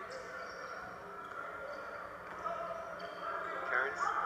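Basketball game arena sound played through a TV and re-recorded: a steady murmur of crowd voices with a basketball being dribbled on the court.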